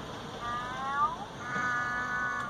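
A toddler singing wordlessly in a high voice: one note that slides up and then down, followed by a second note held steady from about a second and a half in.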